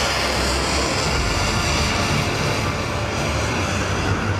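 A missile's rocket motor roaring as it launches from a warship's vertical launch system: a steady, loud rushing noise with a deep rumble beneath, under background music.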